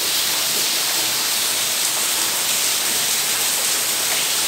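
Heavy rain pouring down, an even, steady hiss.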